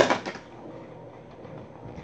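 A child's loud, breathy rush of noise from the mouth at the very start, dying away within a moment, then low room noise.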